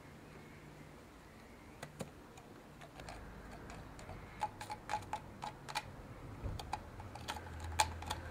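Knife blade clicking and scraping against the bone inside a sawn-open deer skull as the brain is scooped out of the brain cavity: irregular sharp clicks, few at first and coming much more often from about four seconds in, over a faint low rumble.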